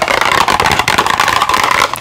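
Long fingernails rapidly tapping and scratching on a small cardboard product box held close to the microphone, in a dense, fast run of clicks and scrapes.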